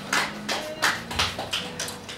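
A few scattered hand claps from a small audience, irregular and thinning out as the applause dies away.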